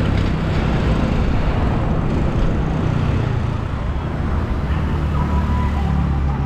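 Motor scooter riding along a town road: the steady drone of its small engine under loud road and wind rush, with traffic around.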